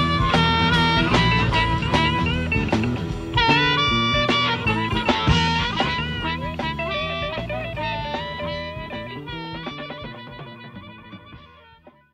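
Instrumental outro of a country-rock band recording, with pitched lead lines bending over bass and drums. It fades out steadily to silence by the end.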